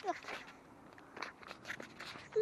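Faint scattered crunches and clicks, with a cluster about a second in, and a brief voice sound at the very start.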